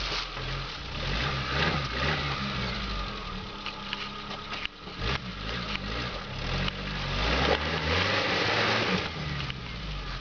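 Suzuki Samurai's four-cylinder engine revving up and down under load as it claws up a muddy slope, with scattered knocks and clatter, getting louder about three-quarters of the way through.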